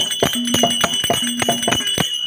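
Street-theatre percussion: a pair of rope-laced hand drums struck in a quick, even rhythm of about four strokes a second. The drum notes ring over a steady, high, bell-like metallic ringing.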